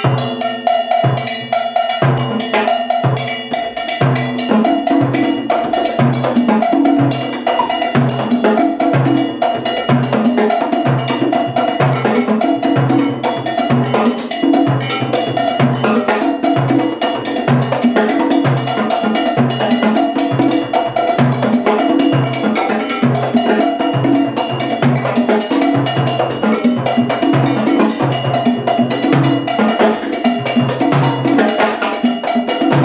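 Afro-Cuban Mozambique rhythm played by a Latin percussion section. A cowbell pattern rings over a steady, repeating low drum beat and sharp drum strokes.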